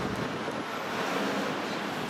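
Steady road traffic noise, an even wash with no distinct events.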